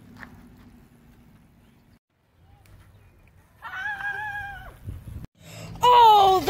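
A boy's voice: a short wavering vocal sound about halfway through, then a loud drawn-out groan near the end from the worn-out rider after hard pedalling. Before that there is only faint low background, and the sound drops out briefly twice.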